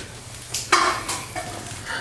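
A man crying: one short, breathy sob with a little voice in it, a little past halfway, over a low steady room hum.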